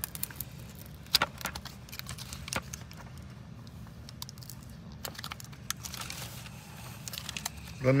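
Scattered crinkles and small clicks as fingers pick and tug at the packaging wrapper on a toy dinosaur surprise egg, over a steady low hum.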